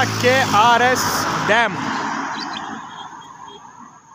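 Road and wind noise from a moving vehicle, a steady rush that fades away over the last two seconds as the vehicle slows, with a few words of talk at the start.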